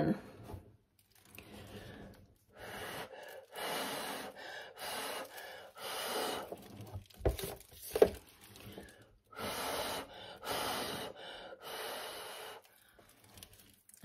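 Repeated hard puffs of breath, about ten in a row with short pauses, blowing wet acrylic paint outward across a poured coaster tile to spread it and open up cells.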